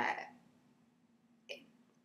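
A woman's hesitant speech: a drawn-out "uh" at the start and a short, clipped "it" about one and a half seconds in, with a faint steady hum underneath.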